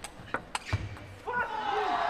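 Table tennis ball clicking sharply off bats and table, about four strikes in the first second of the match-point rally. About a second and a quarter in, loud voices rise as the rally ends and the winning point is taken.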